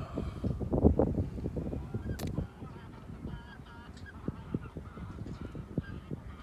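A flock of geese honking: short calls repeated in quick clusters. Wind buffets the microphone over the first couple of seconds.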